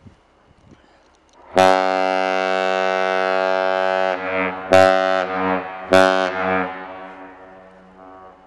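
Great Lakes freighter's deep ship's horn sounding one long blast and then two short blasts, each fading in a long echo. The long-and-two-short pattern is the master's salute a departing ship gives.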